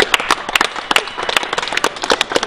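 Audience applause: many hands clapping irregularly.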